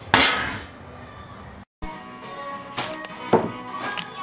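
A sudden loud hiss that fades away over about a second, then after a break, background music playing with a few sharp knocks of things set down on a counter.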